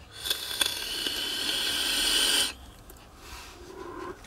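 A long draw on an e-cigarette atomizer: air hissing through the firing coil for about two seconds, slowly growing louder, then cutting off, followed by a fainter breath out.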